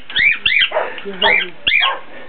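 Pet birds squawking: several short, harsh, high-pitched calls in quick succession, with a voice in between.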